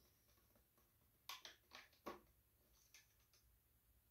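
A few faint clicks and light handling noises, spread over about two seconds in the middle, from a push mower's plastic oil dipstick being pulled from its fill tube and handled with a rag while the oil level is checked. Otherwise near silence.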